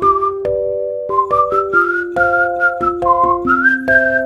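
Background music: a whistled melody over held chords with a light, regular clicking beat.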